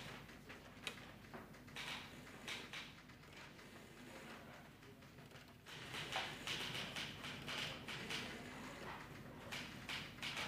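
Faint irregular taps and clicks with some paper handling, as of desk work in an office. The sound becomes louder and busier about six seconds in.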